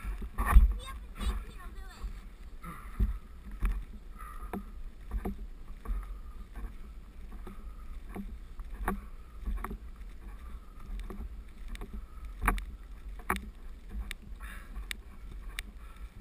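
A board sliding fast down a snowy slope, heard from a camera mounted on it: a steady scraping rush over snow with a low rumble and frequent sharp bumps and knocks as it rides over ruts.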